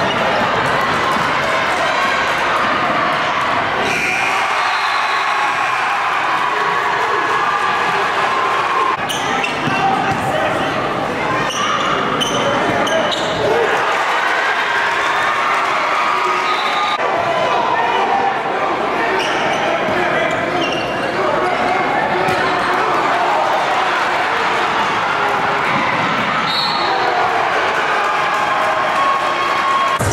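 A basketball dribbling on a hardwood gym floor during a game, over a steady din of many spectators talking, echoing in a large gym.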